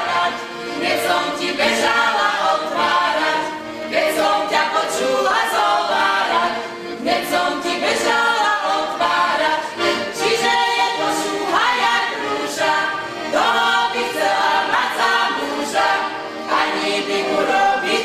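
A group of women singing a Slovak folk song together, unaccompanied, in continuous phrases.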